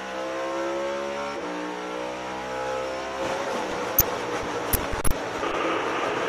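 In-car sound of a NASCAR Cup car's V8 engine held wide open, its pitch climbing steadily. About halfway through a rough scraping noise takes over as the car rides the outside wall, with three sharp knocks about four to five seconds in.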